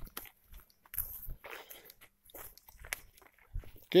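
Footsteps crunching over dry grass and twigs: a few irregular steps with short quiet gaps between them.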